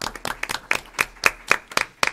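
A small group of people clapping in a quick, even patter of about seven claps a second, starting suddenly and stopping near the end.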